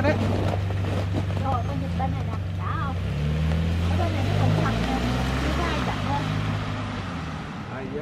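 Lexus RX SUV pulling out of a driveway and driving off, its low engine hum shifting in pitch over a steady low rumble, with faint voices.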